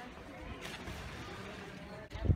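Outdoor swimming-pool ambience: a low, uneven rumble with faint distant voices, and one brief sharp noise a little over half a second in.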